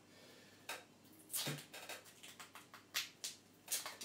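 Duct tape being picked at and pulled off its roll in a string of short, scratchy rips at irregular intervals.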